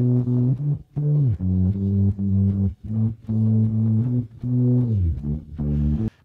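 An isolated bass stem split from a pop song by iZotope RX 11's stem separation: a low bass line of held notes, some sliding down in pitch, with brief gaps between them. The separation sounds pretty bad to the reviewer.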